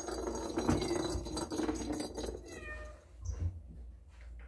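Cat meowing, with a call that falls in pitch a little past halfway through.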